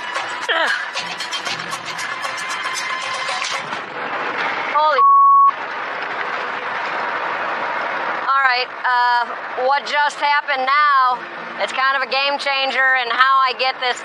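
Dense rain noise under a soft music score, then a short, loud censor bleep about five seconds in. From about eight seconds a woman's voice calls out and strains in short bursts.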